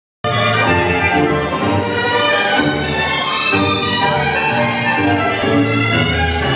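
Recorded tango orchestra music, with violins carrying the melody over a rhythmic bass line. It starts abruptly just after the beginning.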